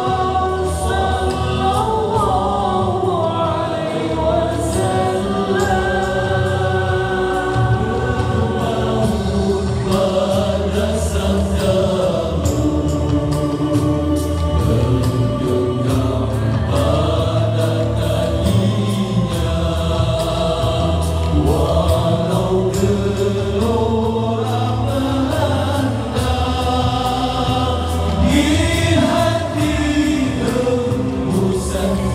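A male nasyid vocal group singing a song in close harmony through a PA system, several voices at once, over a steady beat.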